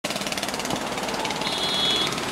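A motor running with a rapid, even rattle, many beats a second, over a low steady hum, and a brief high steady tone near the end.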